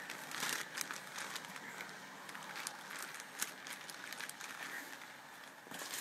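Clear plastic packaging bag crinkling quietly as it is handled, with scattered short, sharper crackles.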